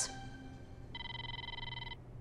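Mobile phone ringing: one steady electronic ringtone tone about a second long, starting about a second in.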